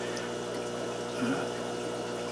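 A steady hum and water-like hiss of aquarium equipment running, with no sudden sounds.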